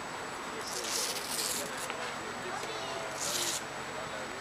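Indistinct voices of people talking nearby over steady street background noise, with two short bursts of hiss, about a second in and again near the end.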